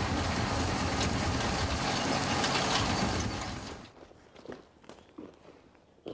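An engine running steadily under a broad rushing noise. It fades out about three and a half seconds in, leaving quiet with a few faint clicks.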